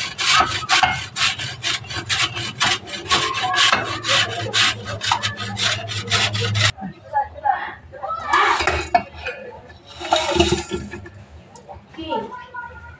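A coconut half grated on a flat stainless-steel hand grater: quick, even rasping strokes, about four a second, stopping abruptly about two-thirds of the way in. Two short, softer scraping noises follow.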